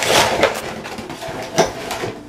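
Cardboard pizza box being picked up and handled: rustling with a couple of knocks, one at the start and another about a second and a half in.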